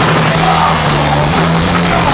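Live rock band playing loud and heavy, in a metal style: electric guitar and bass guitar over a drum kit.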